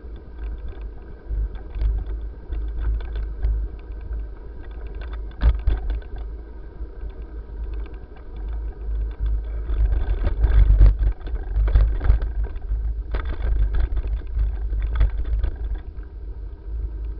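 Bicycle riding along an asphalt path: a steady low rumble of road vibration and wind on the microphone, with frequent rattling clicks, loudest and most rattly about ten to twelve seconds in.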